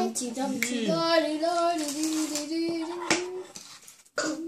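A young child's voice holding long, drawn-out sung notes that waver a little in pitch, trailing off near the end.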